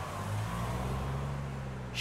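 Steady low hum of a car driving along.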